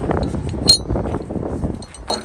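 Metal lifting clamps clinking as they are handled, with one sharp clink about two-thirds of a second in, over a low rumbling background.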